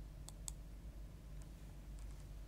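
Quiet low hum with two faint clicks close together, about a third and half a second in, and a fainter click later.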